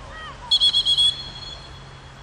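Referee's pea whistle blown once: a shrill, rapidly warbling blast of about half a second that starts about half a second in, then trails off.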